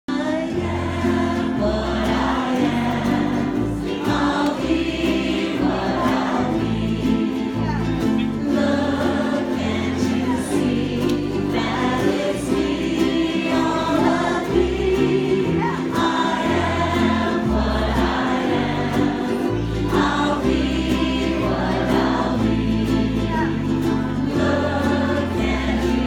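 A large group of ukuleles strummed together while a crowd of voices sings in unison, amplified through a PA, over a bass line that changes note every second or so.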